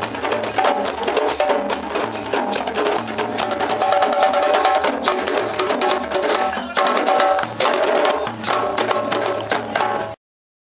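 A group of djembe drummers playing together, a dense, continuous rhythm of hand strikes on the drumheads.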